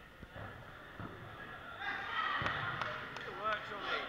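Dodgeballs bouncing and knocking on a sports hall floor, a few separate knocks, echoing in the hall. From about two seconds in, players' voices call out over them.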